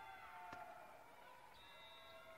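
Near silence: faint background music of several held tones, with a single sharp click about half a second in.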